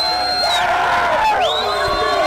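A crowd of men shouting and cheering together at full voice, with a high, held whistle-like tone cutting through in the first half-second and again from about one and a half seconds in.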